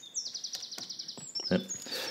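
A small bird singing in the background: a rapid trill of high, downward-sweeping chirps that fades out after about a second.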